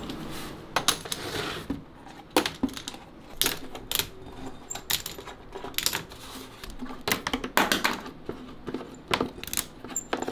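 Wooden violin spool clamps clattering as they are unscrewed from the edge of the violin body and dropped into a plastic basket full of other clamps: irregular sharp clicks and knocks, several a second at times.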